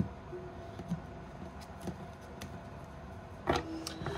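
Tarot cards being handled on a wooden table: a few soft, scattered clicks and taps as cards are picked up and set down, with a louder one near the end.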